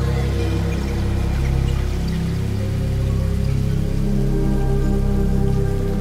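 Ambient music from a Eurorack modular synthesizer: a sustained wavetable pad over slowly changing low bass notes. Through it, a siren-like tone glides slowly upward, made by a slow LFO sweeping the pitch of a Panharmonium voice.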